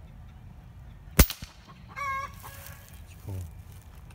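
A single shot from an Artemis P15 .22 PCP bullpup air rifle, a sharp crack about a second in. About a second later a chicken gives a short call.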